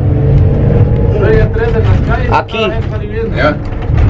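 Steady low engine and road rumble of a box truck heard from inside its enclosed cargo box, with several people talking over it.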